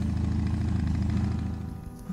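An engine idling: a steady low rumble that fades out near the end.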